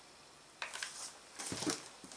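Faint handling noises of small plastic craft pieces, with a light knock about a second and a half in as a hot glue gun is set down on the table.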